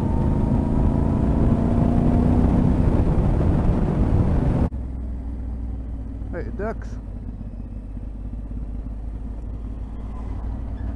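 Yamaha Ténéré 700 parallel-twin engine running under way, with heavy wind noise on the microphone and an engine note that rises slowly. About halfway through the sound drops suddenly to a quieter, low steady engine hum as the bike rolls slowly.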